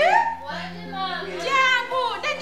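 A person's voice in a sing-song chant with strongly sliding pitch, over a faint steady background of music.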